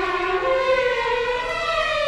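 Symphony orchestra playing, the strings holding long sustained notes that slide slowly upward in pitch.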